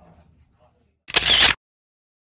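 A camera-shutter sound effect at a video cut: one loud, short click-and-rush of noise about a second in, lasting under half a second.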